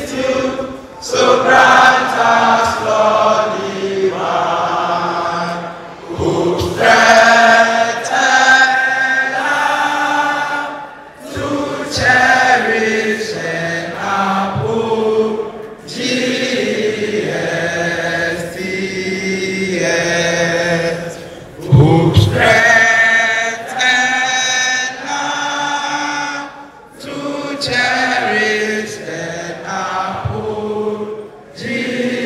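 A large group of schoolboys singing together in sung phrases of about five seconds, with held notes and a brief break between lines.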